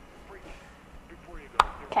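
A single sharp tap about one and a half seconds in, over quiet room tone.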